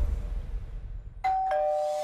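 The music drops away, then about a second in a two-note descending chime sounds, like a ding-dong doorbell: a higher tone followed a quarter-second later by a lower one, both held and ringing.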